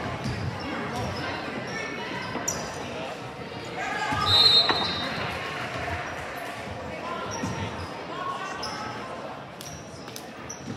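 Players' and spectators' voices in a large echoing basketball gym, with a basketball bouncing on the hardwood floor. A referee's whistle blows once, loudly, about four seconds in.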